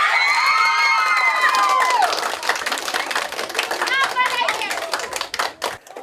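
A classroom of schoolchildren screaming and cheering, with a long high-pitched shriek in the first two seconds and another high shout about four seconds in. Clapping runs underneath, celebrating a classmate just named the winner.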